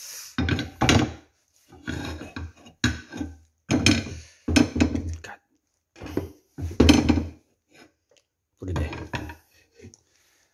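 A metal spoon scraping and knocking in a frying pan of peas, in a run of short clatters with pauses between, and a glass lid set on the pan.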